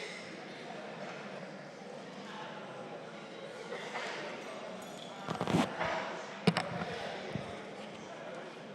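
Murmur of many voices in a large legislative chamber, with a few sharp knocks at about five and a half and six and a half seconds in.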